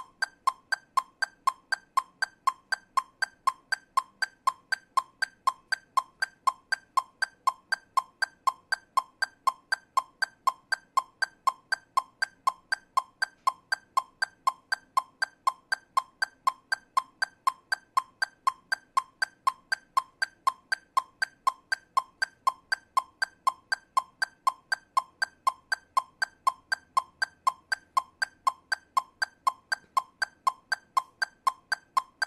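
Metronome clicking steadily at 120 beats per minute, subdivided into eighth notes: about four short, evenly spaced clicks a second.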